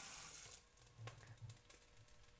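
Thin stream of water from a pot-filler tap running into a pot, shut off about half a second in, followed by near silence.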